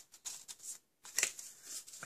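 Paper and card rustling and sliding as a gift card is slipped into a folded card-stock gift card holder, in short scrapes, with a brief pause about a second in followed by a sharper tap.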